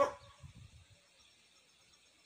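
A dog barks once, a short, sharp bark right at the start, followed by faint background noise.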